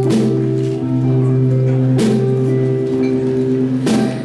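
Live rock band playing an instrumental passage between sung lines: sustained, held chords that change every second or two, with a drum and cymbal hit about every two seconds.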